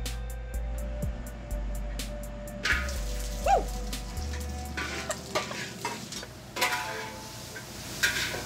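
Chopped vegetables hitting a hot oiled wok, setting off a sudden loud sizzle nearly three seconds in that carries on as they fry, with a few knocks later on. A quiet music beat plays underneath before the sizzle starts.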